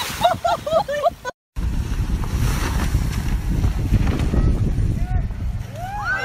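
Wind rumbling on the microphone, a dense low noise from about a second and a half in to the end, after a brief cut to silence. Short voice calls come in the first second.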